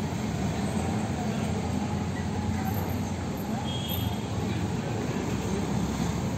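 Street ambience: a steady rumble of road traffic and passing vehicles, with faint voices.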